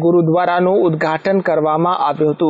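Speech only: a voice talking continuously in Gujarati, a news voice-over.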